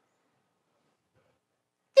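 Near silence, then a man's voice starts speaking in a high, raised pitch right at the very end.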